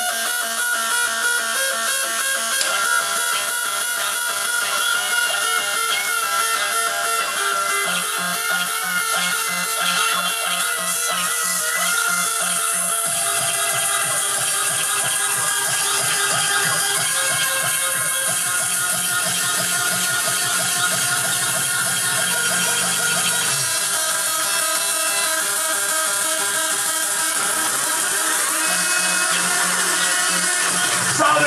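Makina, a fast Spanish electronic dance style, playing continuously from a DJ mix at a steady level, with several melodic lines layered over a bass line that changes every few seconds.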